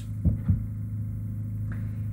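A steady low electrical-sounding hum, with two faint short soft sounds about a quarter and half a second in.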